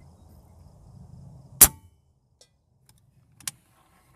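A single shot from a .177 Benjamin Marauder Gen 1 PCP air rifle: one sharp crack about a second and a half in, followed by a fainter click near the end.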